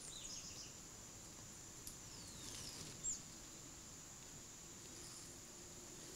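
Faint outdoor background: a steady high-pitched insect drone, with a few short descending bird chirps in the middle.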